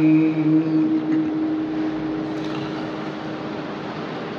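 A man's chanting voice holds the last note of an Arabic devotional verse for about the first second, then trails off into a steady, slowly fading wash of room noise.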